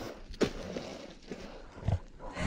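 Footsteps of motocross boots on dry leaf litter and rotten wood, with a sharp step about half a second in and a heavier one just before the end.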